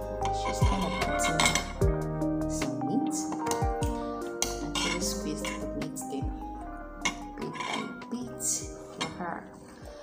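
A metal spoon clinking and scraping against a bowl again and again while food is scooped from it, over background music with held notes.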